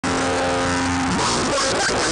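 Noisy electric guitar freakout: a single held note for about the first second, then breaking into a chaotic mass of wavering, sliding pitches and noise.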